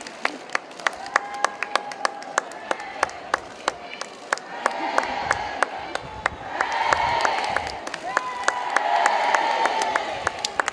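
Crowd cheering and calling out, swelling louder about halfway through and twice more towards the end, with many scattered sharp clicks throughout.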